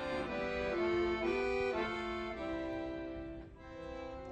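Yodel duet: two women's voices in close harmony holding long notes over accordion accompaniment, the notes moving in steps, with a brief break about three and a half seconds in.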